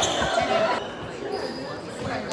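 Players' voices and a ball thudding on a hardwood gym floor, echoing in a large hall; it goes quieter a little under halfway through.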